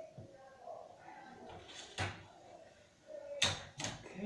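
A sharp click about halfway through, then two loud knocks in quick succession near the end, over faint low murmur.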